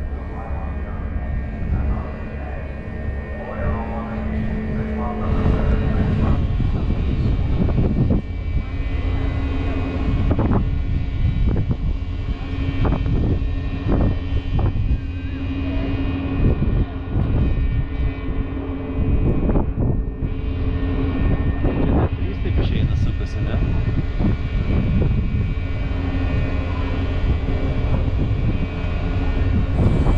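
Steady low drone of a car ferry's engines under way, with wind gusting on the microphone and indistinct voices in the background.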